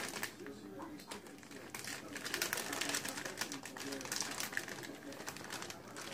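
Plastic packaging crinkling and clicking as Swiss cheese slices are pulled from it off-camera.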